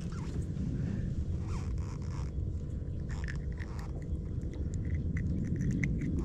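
Small clicks and scratches of hands handling a freshly caught bluegill and working the hook free, busier in the second half, over a steady low rumble of wind on the microphone.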